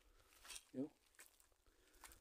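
Near silence: outdoor background hush, with one short vocal sound from a man a little before the one-second mark.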